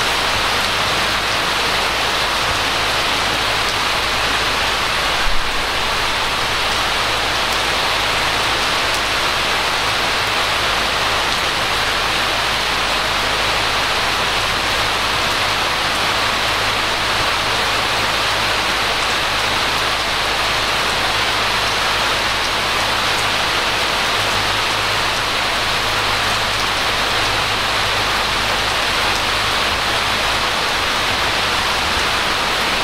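Steady rain falling, an even hiss throughout, with a low steady hum underneath and a single brief click about five seconds in.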